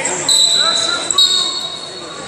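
Referee's whistle blown to restart the wrestling bout: a steady high-pitched blast beginning about a quarter second in, then a second, slightly higher blast just after a second, in a reverberant hall.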